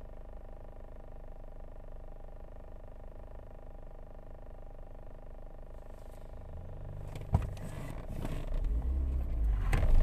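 Steady hum of a car's engine idling, heard inside the cabin. A sharp click comes about seven seconds in, then a louder low rumble of the phone being handled builds over the last two seconds.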